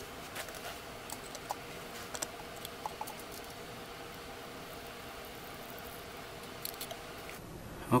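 Water poured from a bottle trickling steadily into a plastic planter's bottom reservoir tray, with a few small clicks of handling; the pouring stops abruptly near the end.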